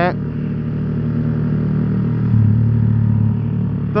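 Yamaha R15 sport bike's single-cylinder engine running steadily at cruising speed, heard from the rider's seat with road and wind noise. The engine note grows louder for about a second a little past halfway.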